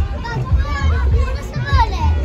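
Children's voices calling and chattering on a playground, over loud background music with a heavy bass.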